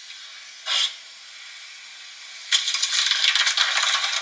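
A crinkly foil sheet being peeled off the top of a cake. There is a brief rustle about a second in, then continuous crinkling and crackling from a little past halfway.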